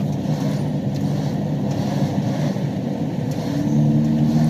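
Road and engine noise inside a moving vehicle's cabin at highway speed: a steady low rumble with an even engine hum that becomes a little more distinct near the end.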